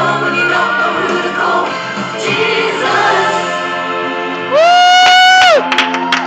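A woman singing a worship song into a microphone over steady accompaniment, ending on a loud, long held high note about four and a half seconds in that falls away after about a second. Sharp claps start just before the end.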